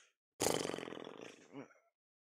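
A man's long exasperated groan, creaky and breathy, starting loud and fading away over about a second and a half: a reaction to a near miss.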